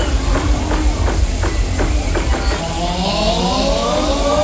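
A fairground ride's fog machine hissing out smoke over a deep, steady rumble, with a series of sharp knocks in the first half. Near the end comes a rising whine.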